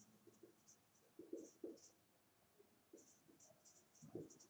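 Marker pen writing on a whiteboard: a string of short, faint strokes as the letters are formed.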